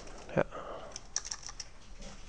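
Keystrokes on a computer keyboard, deleting and retyping digits, heard as a quick cluster of light clicks about a second in.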